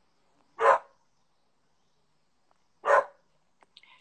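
A dog barking twice, two short barks about two seconds apart.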